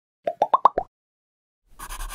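A quick run of five cartoon-style pop sound effects, each higher in pitch than the last, followed about a second and a half in by a short swishing rub as a hand sweeps across the drawing board.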